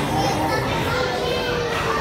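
Young children's voices and play noise over a steady background din, with one voice holding a single long note about a second in.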